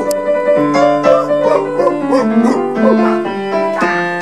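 Live jazz-boogie band playing an instrumental passage between sung lines: piano to the fore over electric bass and drums.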